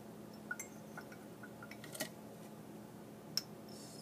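Quiet handling sounds of small objects in a ceramic mug: a few soft clicks and taps of a plastic bag and glass being moved, the sharpest about two seconds in and again a little after three seconds.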